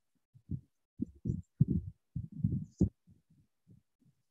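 A series of muffled, irregular low thumps and rumbles picked up by a computer microphone, most of them between about one and three seconds in.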